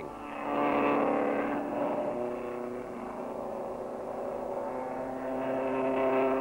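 Engine of a vintage racing car running under way along the track, its note louder about a second in, dropping a little about two seconds in, and swelling again near the end.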